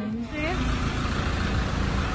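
Street traffic noise with a steady low rumble from road vehicles, cutting in suddenly just under half a second in, after a brief voice at the start.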